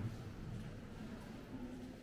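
Quiet indoor ambience of a large stone hall with faint, indistinct murmuring voices of visitors.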